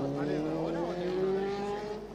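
A passing vehicle accelerating, its engine or motor giving a steady whine that rises slowly in pitch, with faint voices alongside.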